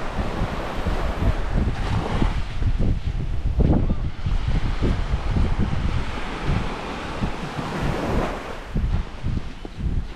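Wind buffeting the microphone in irregular gusts over the wash of small waves breaking on a sandy shore.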